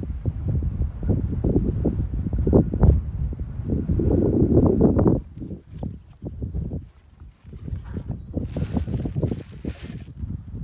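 Wind buffeting the microphone as a loud, uneven low rumble, heaviest about four to five seconds in. Through it come irregular knocks and thumps of someone moving about close to the microphone.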